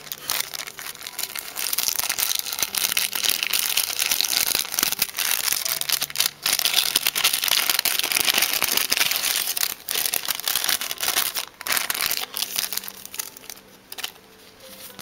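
A clear plastic wrapper crinkling and rustling as hands handle and open it. The crinkling runs almost without a break from about a second and a half in until shortly before the end, with a few short pauses.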